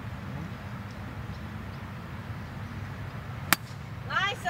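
A 4-wood (fairway wood) striking a golf ball from the fairway: one sharp, crisp click near the end, over a faint steady outdoor background.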